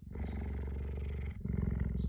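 Cheetah purring right at the microphone: a steady, low, pulsing rumble that breaks briefly a little past halfway as it changes breath.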